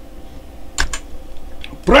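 A few separate clicks from a computer keyboard, the strongest a little under a second in.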